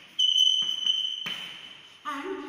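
A single high steady tone that starts suddenly about a quarter second in and fades away over the second half.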